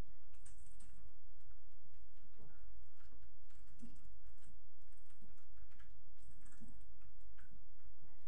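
Faint scattered clicks and small knocks, with a few brief puffs of breath, from a man doing feet-raised push-ups, over a steady low hum.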